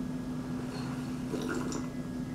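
A person drinking milk from a glass, with faint swallowing sounds about halfway through, over a steady low hum.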